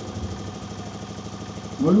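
Steady low hum with a faint, even flutter, then a voice starts speaking just before the end.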